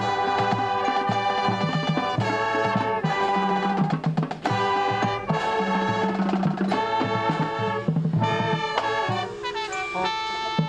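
A drum and bugle corps playing: the horn line sounds loud sustained brass chords that change about once a second over low bass notes, with drums and percussion underneath.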